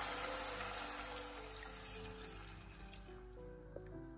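Water poured from a glass into a hot frying pan of fried buckwheat and onion, the rush of water fading away over about three seconds, with soft background music underneath.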